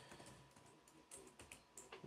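Faint typing on a computer keyboard: a few soft, scattered keystrokes.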